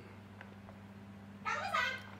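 A small dog whining once, a short, high cry with a gliding pitch near the end, over a faint steady hum.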